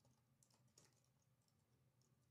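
Near silence with a few faint, short keystrokes: typing on a computer keyboard.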